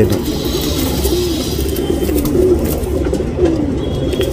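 Pigeons cooing: a string of short, low, wavering coos.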